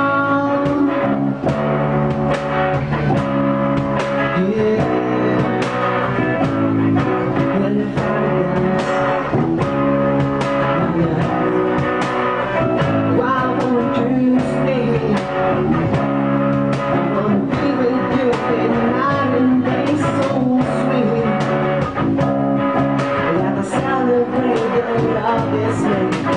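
A small band playing a song live in a room: a man singing into a microphone over electric guitar, bass guitar and cajón, with a steady beat throughout.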